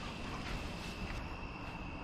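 Crickets chirring in a steady, high-pitched, unbroken trill, over a faint low rumble.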